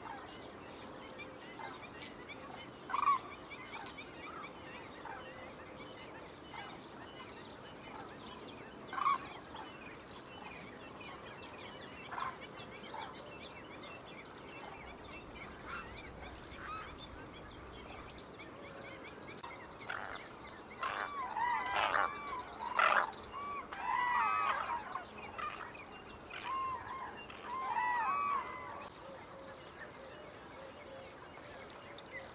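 Poultry calling: a single call every few seconds at first. About two-thirds of the way in come bursts of rapid, repeated, arched calls that overlap one another.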